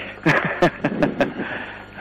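Men laughing in a few short bursts at a joke.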